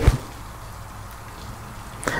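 Quiet room tone with a steady low hum, after the last word of speech trails off at the very start.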